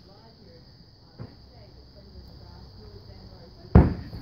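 A single loud thump of an inflatable beach ball near the end, as the kicked ball reaches the person filming, over otherwise quiet outdoor ambience.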